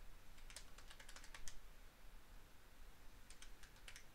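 Keys of a handheld plastic calculator being tapped, faint light clicks: a quick run of them from about a third of a second in to a second and a half, then a few more near the end.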